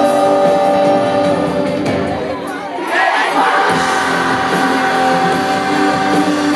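Live pop-rock band playing, with held notes over electric guitar and drums. About halfway through, the bass and drums drop out for about a second, and then the full band comes back in.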